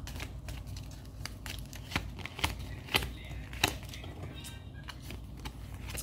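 Tarot cards being shuffled and handled, with soft rustling and a handful of sharp card snaps in the middle.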